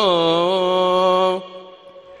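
A muezzin's voice holds the long, ornamented final note of a phrase of the 'Isha adhan, its pitch wavering up and down. The note stops about one and a half seconds in, leaving a short fading echo.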